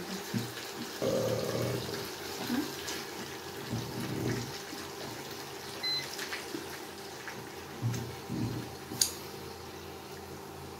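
Eating sounds: chewing and wet mouth noises as boiled yam with sauce is eaten by hand. They come in uneven bursts over a steady low hum, with a short high beep about six seconds in and a sharp click near the end.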